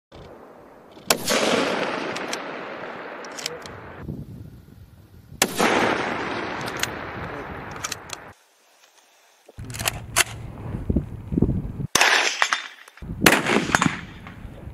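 Sniper rifle shots, each with a long rolling echo that fades over about three seconds. There are two shots about four seconds apart. After a brief silence, two more sharp shots come near the end.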